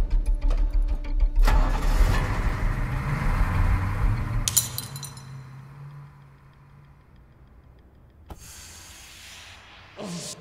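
School bus engine rumbling, with two loud crashes, the second about four and a half seconds in, after which it fades. Near the end a smoke grenade starts hissing.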